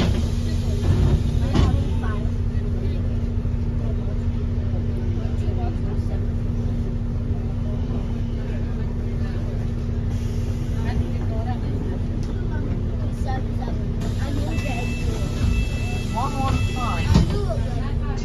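Inside a New Routemaster diesel-electric hybrid bus on the move: a steady low drone and road rumble, with passengers' chatter over it. A high-pitched tone sounds on and off for a couple of seconds near the end.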